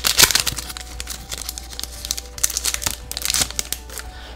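Foil wrapper of a Pokémon trading card booster pack crinkling as it is pulled open and the cards are taken out, loudest just after the start.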